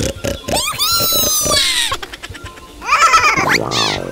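Cartoon animal voices over upbeat children's background music with a steady beat: one long high call that rises and then slowly falls, from about half a second in, and a shorter burst of falling cries about three seconds in.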